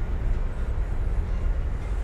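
Steady low outdoor rumble with no distinct event: background noise at the narrator's microphone.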